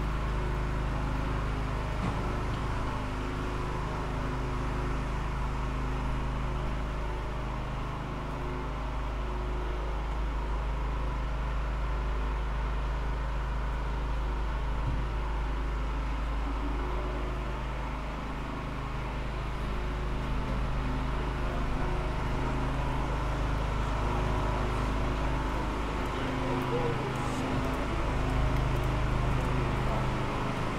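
Street ambience: a steady low mechanical hum with a deep rumble beneath it, and people's voices in the background.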